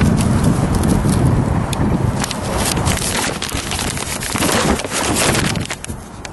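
Paper work order being handled close to the microphone: a low rumble of handling noise, with a dense run of crackling and rustling from about two seconds in.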